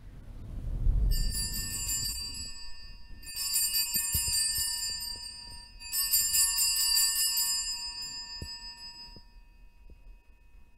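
Altar bells (sanctus bells) shaken three times, about a second in, around three seconds and around six seconds, each ring jingling and then fading. They mark the elevation of the chalice at the consecration. There is a low rumble under the first ring.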